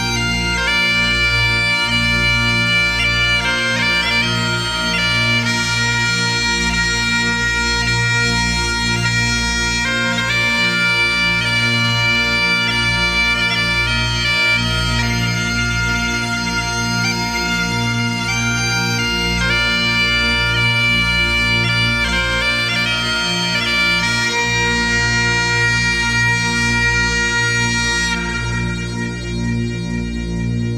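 Bagpipes playing a tune over a steady drone.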